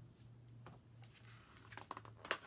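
Near silence with a faint steady low hum, and a few soft clicks and rustles near the end as a picture book's page is turned.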